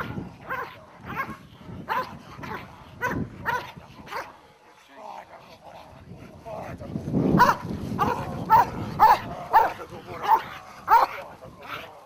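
Dog barking in short, sharp barks: a scattered few, a brief lull, then a quick run of about two barks a second near the end.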